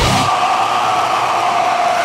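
A break in a deathcore song: the drums and bass drop out, leaving one harsh, held sound that stays steady and then sags in pitch near the end.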